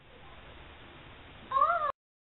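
A single short meow-like call, rising then falling in pitch, about a second and a half in, over a faint steady hiss.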